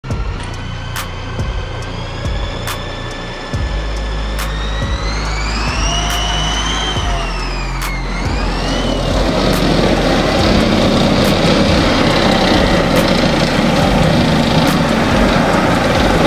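A heavy vehicle engine revs up and drops back sharply about halfway through. A rising rush of noise follows, with music underneath.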